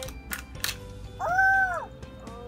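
Sharp crackles of a Kinder Joy egg's foil lid and plastic shell being peeled open, over background music. A little past halfway through comes the loudest sound, a short high call that rises and falls.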